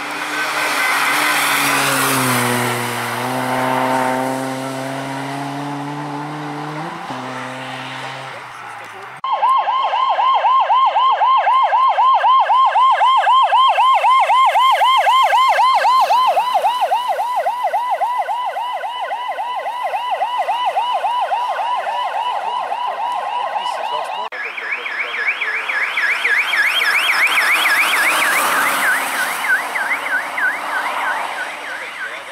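A vehicle drives past with its engine note dropping, then a rally course car's electronic siren starts, a fast wavering yelp. About fifteen seconds later it gives way to a higher, differently wavering siren as the next beacon-lit course car comes through.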